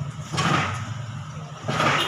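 Vehicle engine idling steadily with a low hum, with two brief swells of noise, one about half a second in and one near the end.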